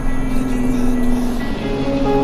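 Background music with sustained notes, with a car engine running underneath.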